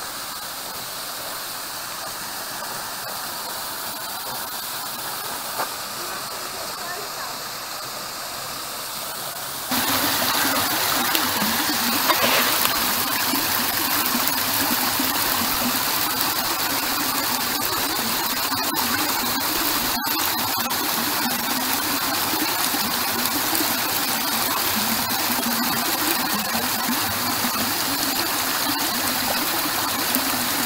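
Steady rushing of a small waterfall spilling into a pool, then, about ten seconds in, louder and closer water streaming over a rock ledge at the top of a cliff waterfall.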